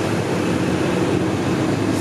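Steady, low mechanical rumble with a humming tone running through it.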